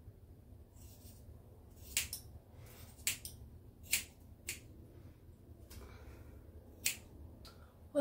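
Scissors cutting a thick lock of hair, with about five crisp snips at uneven intervals.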